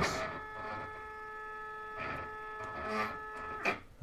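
Stepper motors of a GRBL-driven coil winder whining steadily during a synchronized jog, the geared stepper turning the spindle about one and a half turns while the carriage lead screw creeps along, then stopping shortly before the end.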